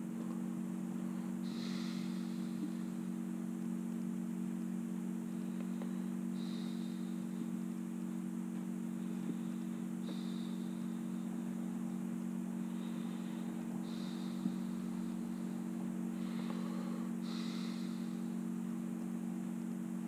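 A steady low electrical hum, several even tones held without change, over a faint hiss.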